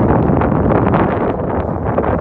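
Wind buffeting the microphone, a loud rumbling rush that gusts unevenly.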